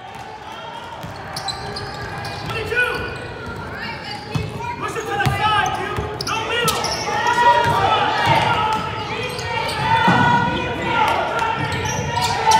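A basketball dribbled on a hardwood gym floor, with sharp bounces over a steady murmur of players' and spectators' voices echoing in a large gym.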